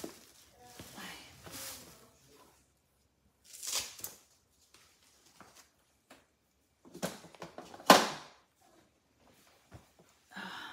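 Rustling and scraping handling noises as a blue device is pulled off the foot and put away, in short bursts about a second in, about three and a half seconds in, and near the eighth second, the last the loudest.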